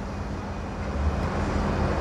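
Low engine rumble of heavy vehicles and machinery on a construction site, with a faint steady hum, swelling a little about a second in.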